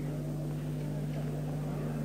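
Steady low electrical hum with faint hiss from the sound system during a pause in the speech.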